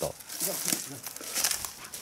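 Footsteps crunching and rustling through a thick layer of dry fallen leaves, several uneven steps in quick succession.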